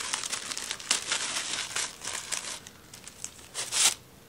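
Gift wrapping being pulled open by hand, crinkling and tearing in irregular crackles, with a louder rustle near the end.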